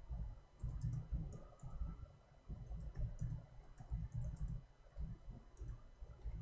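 Faint, scattered clicking of a computer mouse and keyboard, with soft, irregular low bumps underneath, as someone searches for something on a computer.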